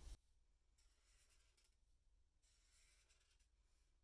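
Very faint Sharpie felt-tip marker drawing across paper, in two stretches of about a second each, with near silence between them.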